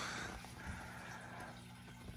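Quiet room with a low steady hum and faint rustling as an LP record jacket is handled.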